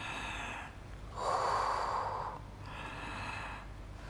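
A woman breathing audibly in time with a Pilates exercise: three breaths, the middle one the loudest and longest.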